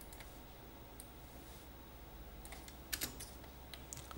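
Faint computer keyboard keystrokes: a few scattered taps, then a quicker cluster of clicks about three seconds in as a spreadsheet sum formula is typed and entered.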